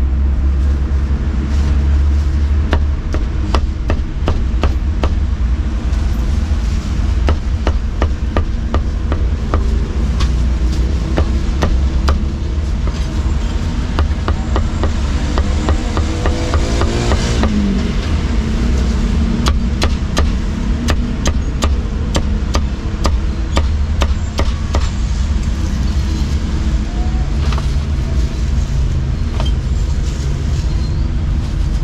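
A meat cleaver chopping barbecued pork (char siu) on a thick round wooden chopping block, with many sharp chops at an uneven pace. A steady low traffic rumble runs underneath, and a passing engine rises in pitch about halfway through.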